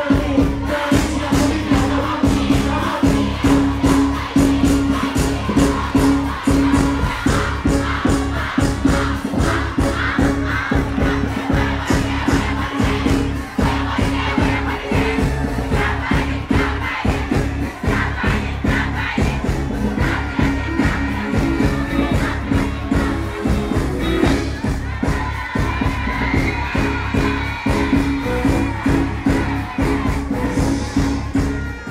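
Loud live music through a concert sound system, with a steady beat and heavy bass, mixed with the noise of a large crowd.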